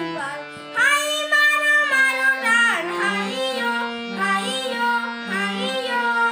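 A child singing a melody in long held notes with sliding, ornamented pitch bends, over instrumental accompaniment.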